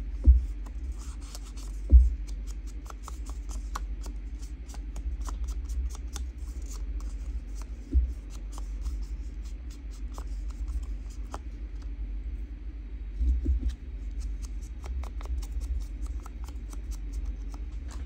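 Foam ink blending tool dabbed and rubbed over the edges of a small piece of paper, a run of many small clicks and paper rustles, with a few dull thumps against the craft mat; a steady low hum underneath.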